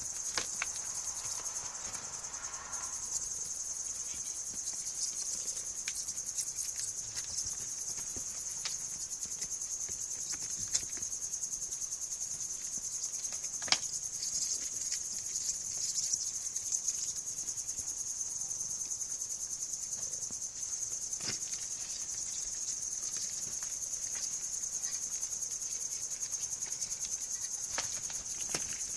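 Crickets chirping in a steady, high-pitched, continuous trill, with a few sharp clicks or taps on top.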